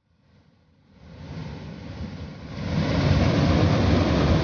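River floodwater pouring through the spillway openings of a concrete weir and churning below it: a steady rush that fades in and grows louder over the first three seconds.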